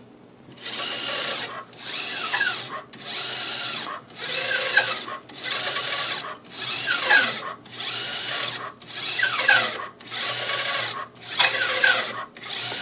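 Motorized RCA-10H automated pipe scanner running a corrosion scan: its drive motors whir in about ten repeated passes, each roughly a second long with a brief pause between, the pitch sliding up and down within each pass as the probe travels and steps over along the pipe.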